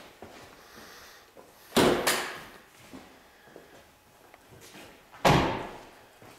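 A 2013 Chevrolet Camaro ZL1's door being shut with a loud thump about two seconds in, and a second loud thud a few seconds later.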